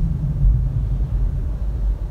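Steady low rumble of a car heard inside its cabin, with no other distinct sound.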